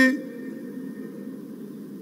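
Steady low background rumble of a large stadium crowd and its public-address system in a pause of a man's speech, the end of his word cut off right at the start.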